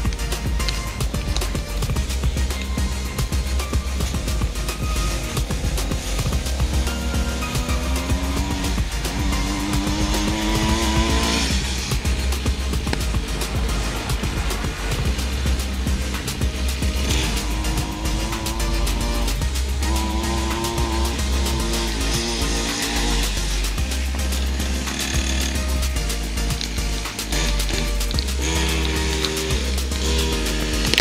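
Small 50cc dirt bike engine revving up several times, its pitch climbing as the bike accelerates and then dropping back, over background music with a steady low beat.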